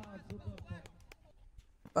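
Faint background voices talking, much quieter than the commentary, with a few soft clicks scattered through; no distinct loud event.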